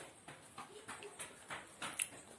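Faint crinkling of a chocolate bar's wrapper being peeled open by hand, in a handful of short crackles.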